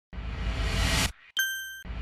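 Intro logo sound effects: a rising whoosh lasting about a second that cuts off suddenly, then a single bright ding that rings briefly and fades.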